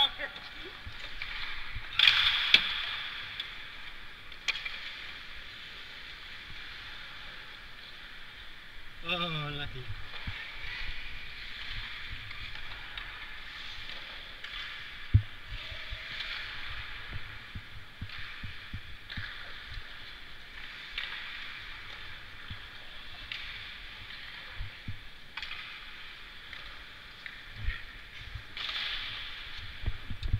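Ice hockey practice on the rink: a steady scraping hiss of skates on the ice, a loud scrape about two seconds in, and scattered sharp clacks of sticks and puck, the sharpest about fifteen seconds in. A voice calls out once with a falling pitch around nine seconds in.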